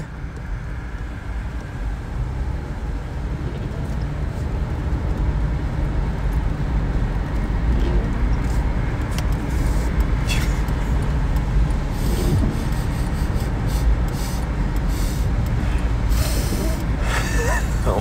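Car driving on the road, heard from inside the cabin: a steady engine and tyre rumble that grows somewhat louder over the first few seconds, then holds.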